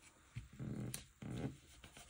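Two short, low-pitched vocal sounds, each about half a second long, with a faint click between them.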